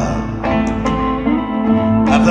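Live band music: an instrumental passage between sung verses, with a note held through the second half.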